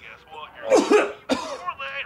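A man coughing and groaning in several short bursts, loudest about a second in.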